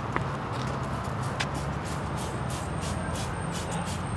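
Steady low outdoor background hum, like distant traffic, with a few light clicks and short rustles. A faint thin high whine comes in about halfway.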